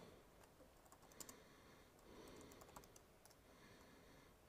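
Faint computer keyboard typing: a handful of scattered key clicks as a short terminal command is entered.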